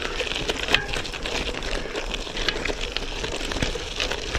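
Bicycle tyres, 32 mm gravel tyres on a road bike, rolling over a loose, rocky dirt trail: a steady crunching rush peppered with many small clicks and knocks from stones and the rattling bike.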